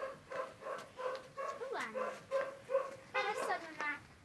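Siberian husky making a run of short whining vocalisations, a few a second, with one longer call that falls in pitch about halfway through.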